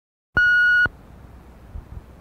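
A single electronic beep, a steady high tone lasting about half a second and cutting off sharply, followed by a faint low hum and hiss.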